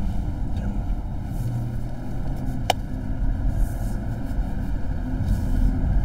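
Steady road and engine noise inside a moving car's cabin, with one short click about two and a half seconds in.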